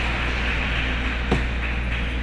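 Steady electrical hum and hiss from an arena sound system, with a single click about a second and a third in.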